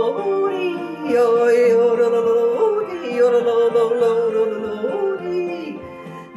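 A singer yodeling over backing music: long held high notes that break and slide down to lower notes, several times over.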